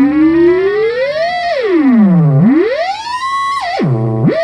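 Homemade theremin-style synthesizer, an Axoloti board played by hand over Sharp infrared distance sensors, sounding one buzzy tone that swoops up and down in pitch. It rises, falls low about halfway through, climbs high again, then drops steeply near the end.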